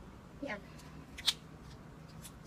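A single short, sharp click about a second in from handling a small cosmetic pencil and its cap, with a faint tick or two around it.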